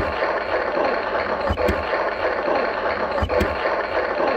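Toy Shop claw machine's prize-win sound effect playing through its speaker: a dense, hiss-like noise with a few low thumps.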